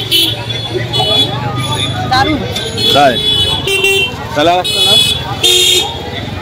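Busy street-market hubbub of nearby voices, with short beeps from motorbike and scooter horns, three times, about a second and a half in, around four seconds in, and near the end.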